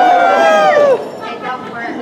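A man's voice holding a high, loud sung note for about a second, its pitch sliding down at the end, followed by quieter talk from the room.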